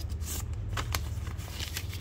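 Paper receipt being handled and folded, giving several short, crisp crackles, over a steady low hum.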